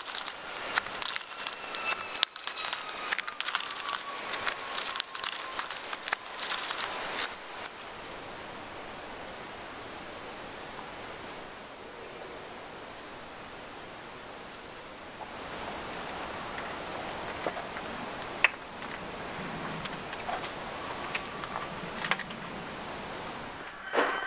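Soil blocker worked into a tub of wet potting mix: gritty crackling and scraping for the first seven seconds or so, then only a faint steady hiss with an occasional click.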